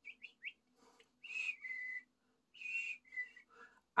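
A man whistling an imitation of a northern cardinal's song: three quick rising chirps, then two longer phrases, each a higher note stepping down to a lower one.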